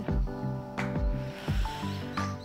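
Background music with a steady beat, a low thump about every three quarters of a second under sustained chords.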